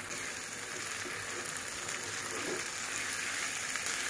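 Steady sizzle of washed, drained rice frying in a wok with cooked spice paste and vegetables, stirred with a wooden spatula. The rice is being fried before water is added, as for pulao.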